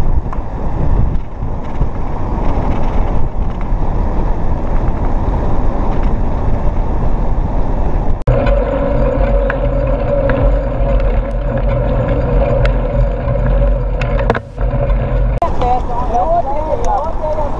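Wind buffeting an action camera's microphone mounted on a moving mountain bike, with tyre rumble on asphalt, as a continuous loud rough noise. About eight seconds in the sound breaks sharply, and a steady hum then runs under the rumble.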